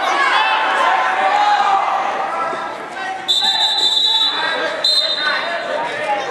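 Referee's whistle: one long shrill blast of about a second, then a short second blast, stopping the action, over the shouting of a gym crowd.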